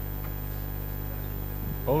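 Steady low electrical mains hum in the sound system, with faint hiss above it.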